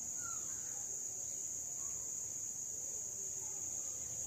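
A steady high-pitched drone that holds unchanged throughout, with one faint short chirp about a quarter second in.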